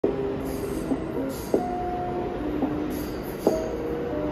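A New York City subway train running past a station platform at speed: steady rail noise from the cars, with sharp knocks a few times and held ringing tones.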